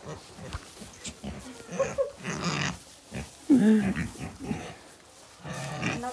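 A pig grunting close to the microphone in several short bursts, the loudest about three and a half seconds in.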